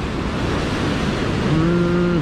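Steady rush of ocean surf breaking on the shore, with wind buffeting the microphone. Near the end a man's voice comes in with a long, drawn-out 'hmm'.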